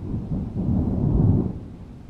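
Deep rolling thunder rumble that swells over about a second and a half, then slowly fades.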